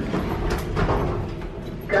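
Hotel lift in use: its sliding doors and running machinery give a steady rumble, with a few knocks about half a second to a second in.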